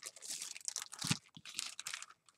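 Clear plastic packaging crinkling as it is handled, in short irregular crackles.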